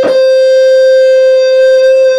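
Electric guitar holding one long, steady lead note, picked right at the start and left to sustain.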